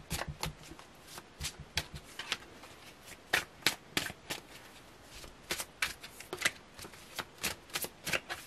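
A deck of tarot cards being shuffled by hand: a run of quick, irregular clicks as the cards strike one another, a few each second.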